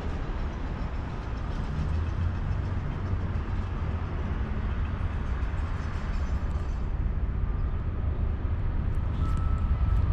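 Wind rumbling on the microphone over a steady wash of distant road traffic, with a faint, steady high whine joining in past halfway.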